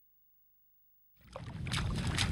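Silence, then about a second in a low rumbling noise starts, with a few crunching footsteps on sand.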